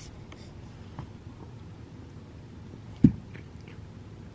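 Faint rustles and small clicks from close handling, with one short low thump about three seconds in.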